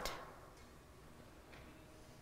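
Near silence: faint room tone, with the reverberation of the last spoken word dying away at the start.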